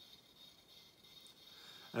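Faint electronic crackling from the light-up Terminator mask bust's built-in sound effect, a small sizzle meant to signal a malfunction.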